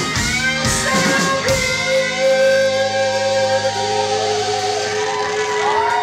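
Live rock band with electric guitars and drums: drum hits stop after about a second and a half, leaving electric guitar notes ringing and sustained, with sliding pitches near the end, as a song closes.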